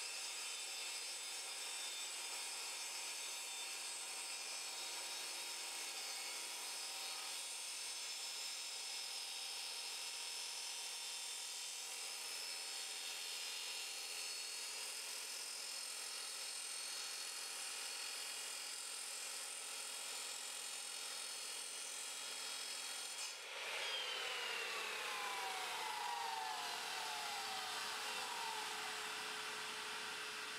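Evolution Rage 3 sliding mitre saw with a diamond blade grinding steadily through a steel-reinforced pre-stressed concrete lintel. About 23 seconds in the sound changes suddenly and a falling whine follows as the blade winds down.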